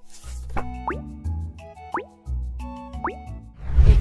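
Playful background music for an edit transition, a bass line under held notes with three quick rising bloop sound effects, and a louder low swell just before the end.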